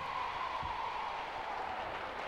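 Studio audience reacting with a steady crowd noise of applause and laughter.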